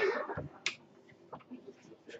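A single sharp click about two-thirds of a second in, then a few faint ticks, from playing cards being handled on a tabletop.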